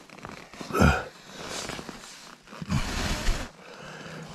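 A man's short grunts and heavy breaths while he works with his hands: one grunt about a second in and another breathy one near three seconds, with faint rustling between.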